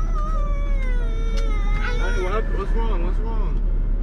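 A high-pitched, drawn-out vocal call gliding slowly down in pitch over about two seconds, followed by shorter wavering calls, over a steady low hum.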